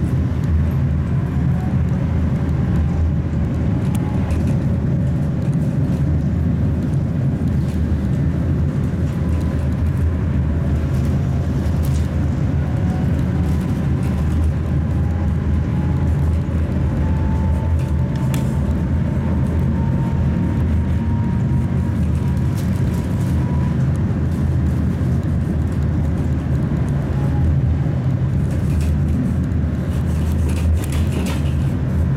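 Tatra T3 tram (MTTE modernization) heard from inside while running along the track: a steady low rumble of the running gear and motors, with scattered faint clicks. A thin whine rises slowly in pitch through the middle as the tram gathers speed.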